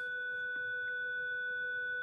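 Electronic school bell sounding as one steady, unwavering tone that holds at an even level.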